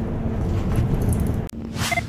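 City bus cabin noise: the engine and road rumble of the moving bus, steady and loud. About one and a half seconds in, the sound cuts off abruptly, and a low hum and a short rising whoosh follow near the end.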